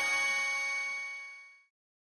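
A bright, shimmering chime from an animated logo, ringing out and fading away, gone shortly before the end.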